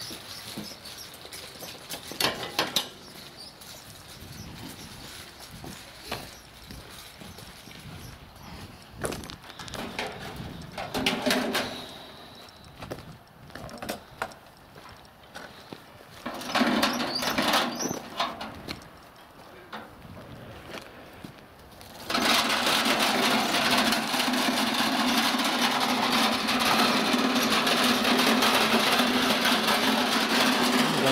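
Small metal wheels of a hand-pushed cart rattling and knocking in irregular bursts over rough asphalt. About two-thirds of the way in, a loud steady noise sets in suddenly and continues, louder than the rattling.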